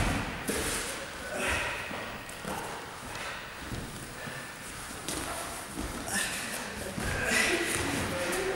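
Two people grappling on gym mats: heavy cotton uniforms rustling and rubbing, bodies shifting and thudding on the mat, with hard breathing in short noisy bursts every second or so.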